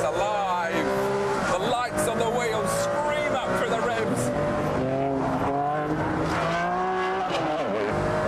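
Ferrari Enzo's 6-litre V12 at full throttle, its pitch climbing and dropping back several times as the paddle gearbox changes up.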